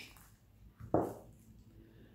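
A single short knock about a second in, as a table knife is set down on a wooden table; otherwise quiet room tone.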